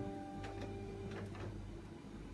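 A chord from a musical instrument ringing out and slowly fading, its last notes dying away about a second and a half in, with a few faint clicks.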